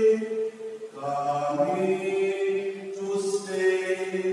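A man's voice singing a slow liturgical chant in long held notes, the pitch sliding up to a new note about a second and a half in.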